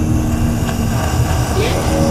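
A loud, low rumbling drone with a steady hum, a sound-design bed for the film. Near the end a woman's short, strained vocal cries come in over it.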